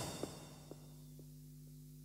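The last hit of a karaoke backing track dying away over the first half second, followed by faint ticks about twice a second over a low steady hum.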